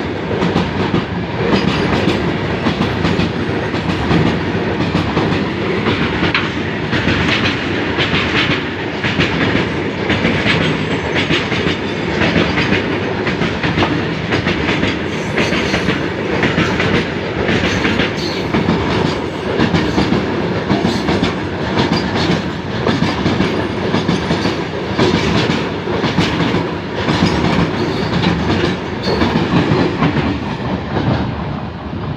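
Long goods train of covered freight wagons rolling past at speed: a steady loud rumble with a repeated clickety-clack of wheels over the rail joints.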